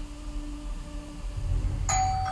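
A doorbell chime rings out near the end, a sudden bright tone that keeps ringing, over a low background rumble.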